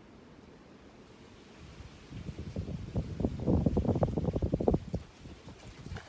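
Footsteps hurrying over sandy dirt towards the phone. They come in about two seconds in and get louder and closer, with wind rumbling on the microphone.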